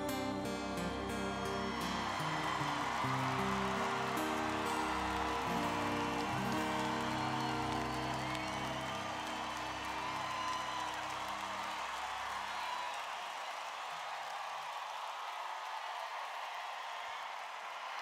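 Final sustained chords of a live song ringing out and fading away under steady crowd applause and cheering, with a few whistles. The music dies out about two-thirds of the way through, leaving only the applause.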